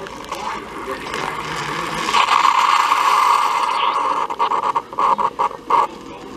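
A single-serve pod coffee maker dispensing coffee into a mug: a steady pouring hiss that swells about two seconds in, then breaks into short sputtering spurts near the end as the brewer pushes out the last of the water and the stream stops.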